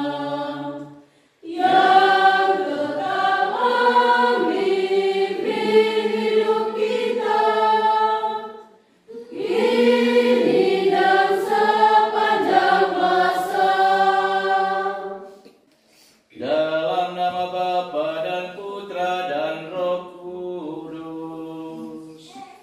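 Church congregation of women and children singing a hymn together, in long phrases broken by short pauses for breath. The last phrase is quieter.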